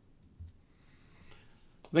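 A single faint click about half a second in, a computer mouse click advancing a presentation slide, over near-silent room tone; a man's voice starts speaking right at the end.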